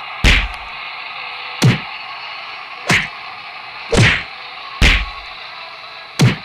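Five heavy punch whacks landing about a second apart in a mock fist fight.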